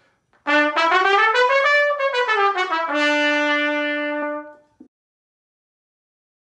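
Trumpet playing a one-octave scale, stepping up and back down, then holding the bottom note for about a second and a half before stopping.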